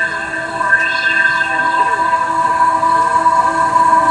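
Electronic music played live: a held synthesizer chord of several steady tones, with faint wavering notes underneath.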